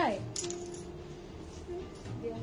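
A single light metallic clink about a third of a second in, ringing briefly, over faint background music.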